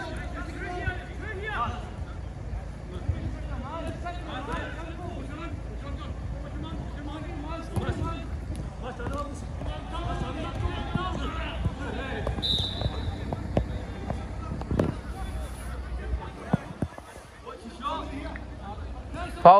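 Players shouting and calling to each other during a five-a-side football game on an artificial pitch, with scattered thuds of the ball being kicked.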